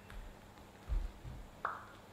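A few soft thumps and a short rustle of people moving and handling a cloth Santa hat.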